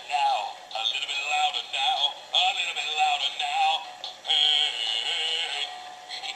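Animated plush pink gorilla toy singing a song through its small built-in speaker. The sound is thin, with almost no bass.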